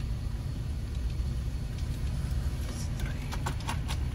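Car engine idling in stopped traffic, heard from inside the cabin as a low steady rumble. A few faint clicks come near the end.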